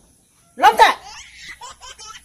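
A person laughing: a loud burst about half a second in, trailing off into lighter, quicker laughter.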